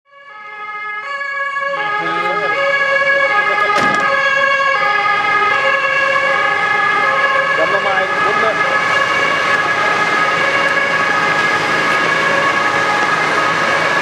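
A loud, steady tone of several pitches sounding together, held throughout like a whistle or horn; it fades in over about two seconds, and its pitches shift twice early on before settling.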